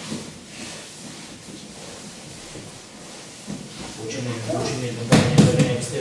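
Low hall noise at first, then a man's voice about four seconds in and a sudden loud burst of noise just after five seconds.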